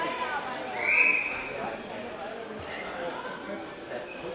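Men's voices calling out in a large sports hall, with one loud, high shout about a second in.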